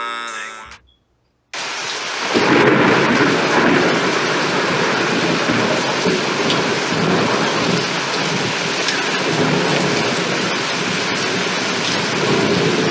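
Steady heavy rain with rolling thunder. It starts suddenly about a second and a half in and grows fuller a second later.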